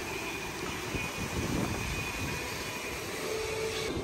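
Wind buffeting the microphone on an open ship deck: a steady rushing noise with uneven low rumbles.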